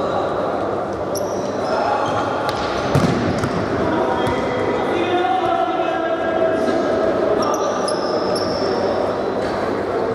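Indoor futsal play in an echoing sports hall: shoes squeaking briefly on the court floor, a single sharp ball strike about three seconds in, and players calling out.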